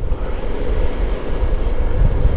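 Wind buffeting a helmet-mounted microphone over the steady running of a Yamaha Mio M3 125 scooter under way. A dense, unbroken low rumble with no pauses.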